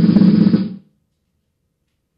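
Drum roll sound effect swelling louder and then cutting off suddenly under a second in, followed by silence.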